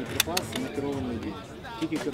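People's voices talking in the background, with a few sharp clicks in the first half-second.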